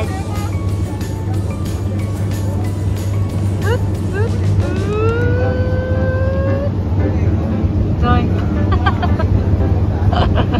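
Electric train at a station platform: a steady low rumble, with a whine that rises in pitch for about two seconds around the middle, as when a train's motors accelerate it away.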